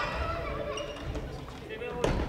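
Voices and thuds of players' footwork on a wooden sports-hall floor during badminton play, echoing in the large hall.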